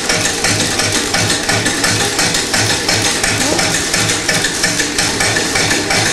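Stone flour mill running as it grinds corn into flour: a steady, fast rattling clatter with a low knock about three times a second.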